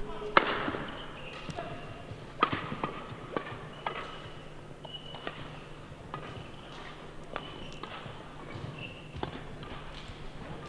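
Badminton rally: sharp racket-on-shuttlecock hits at irregular intervals, about one a second, with short squeaks of players' shoes on the court floor in between.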